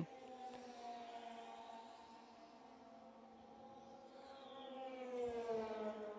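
Open-wheel race car engine heard from a distance, a faint pitched note that dips in the middle and then swells near the end, its pitch falling as the car passes.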